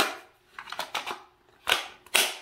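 Hard plastic clicks and knocks as a Ryobi ONE+ 18V battery pack is handled and slid into the cordless shear's handle: a click at the start, a few light rattles and taps about a second in, and a sharp click near the end as the pack goes in.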